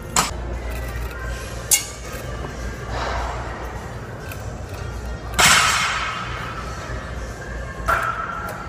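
Four sharp metallic clanks of gym weights, the loudest about five and a half seconds in and ringing on briefly, over steady gym background noise and faint music.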